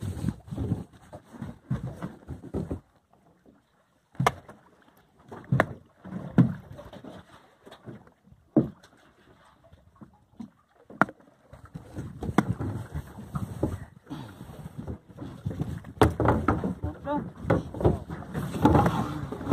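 Irregular sharp knocks and thuds on a small fibreglass fishing boat while the crew work over the gunwale, with a low irregular rumble between them.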